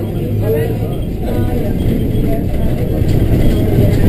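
Bus engine and road rumble heard from inside the passenger cabin of a moving bus, a steady low drone that grows slightly louder toward the end, with faint voices over it.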